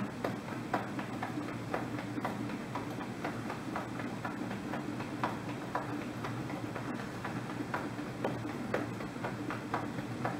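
Hands tapping on the lower belly: a quick, somewhat uneven patter of soft taps, several a second, from a group tapping together. A steady low hum runs underneath.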